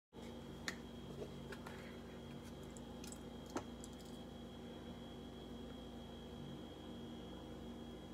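Faint steady electrical hum with a thin high whine, broken by a few sharp clicks and small taps from handling a plastic ketchup squeeze bottle and its cap.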